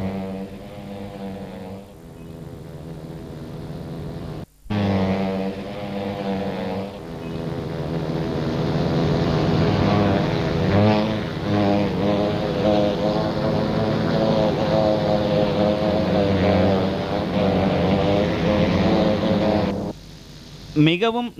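Honeybee swarm buzzing: a dense, steady drone of many wingbeats. It drops out briefly about four and a half seconds in, then comes back louder.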